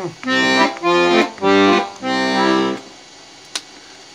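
Beltuna Alpstar 38/96 piano accordion's left-hand bass buttons played on the master bass register: four short bass-and-chord presses in the first three seconds, then a pause broken by a single click.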